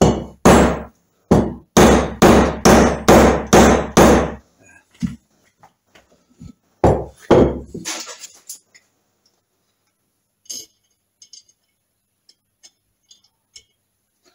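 Hammer blows on the aluminium Triumph Trident gearbox inner casing, tapping the layshaft needle roller bearing in until it sits flush. About nine ringing blows come about two a second, then two more after a short pause, then a few light clinks.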